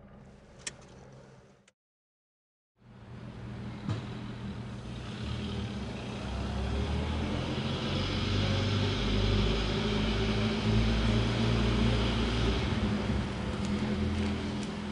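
A vintage car's engine running at low speed as the car rolls slowly closer, its low rumble growing steadily louder over several seconds. Near the start, a fainter car pulls away, and then there is a second of silence.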